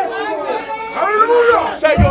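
Overlapping voices of a church congregation shouting and exclaiming over one another, with no clear words.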